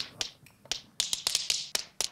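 Tap shoes clicking out a tap-dance step as a run of sharp, uneven taps: a few spaced taps at first, then a quicker flurry from about halfway through.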